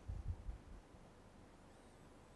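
A few low, muffled thumps in the first second, then quiet room tone.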